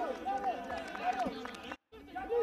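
A voice talking, most likely the match commentary, over faint stadium ambience. The sound cuts out completely for a moment near the end, at an edit.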